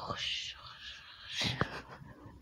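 A woman's soft, breathy laugh that trails off, with a second short breathy burst about one and a half seconds in.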